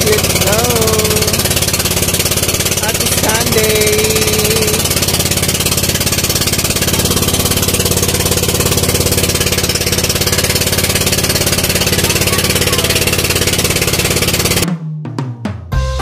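Outrigger boat's engine running loud and steady under way, with a voice calling out briefly over it early on. About a second before the end it cuts off suddenly and upbeat music with a drum beat takes over.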